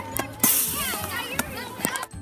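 Children's high voices squealing and chattering, with a short loud hiss-like burst about half a second in and a few sharp knocks.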